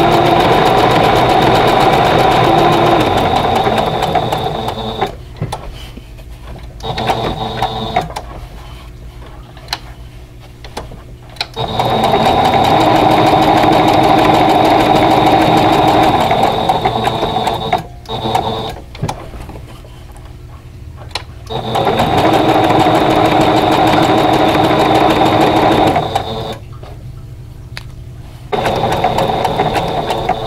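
Domestic sewing machine stitching fabric appliqué with a non-straight applique stitch, running in several spurts of a few seconds with pauses between as the work is turned.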